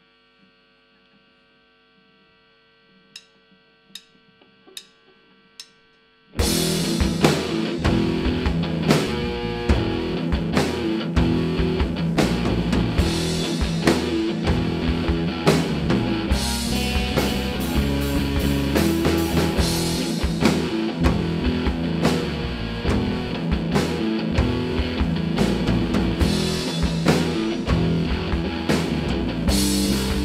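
A steady amplifier hum, then four evenly spaced clicks counting the song in. About six seconds in, a rock band starts playing loud: electric guitar, bass guitar and drum kit.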